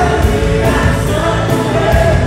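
Live soul band with female backing vocalists singing in harmony, holding long sustained notes over bass and band.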